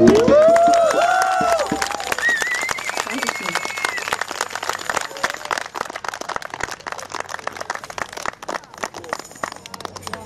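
Audience applause after a song: many hands clapping, with a few cheering, whooping voices in the first four seconds, the clapping thinning out toward the end.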